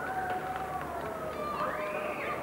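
Musical saw played with a bow: slow, sliding single notes that drift downward, with a higher note swooping up near the end.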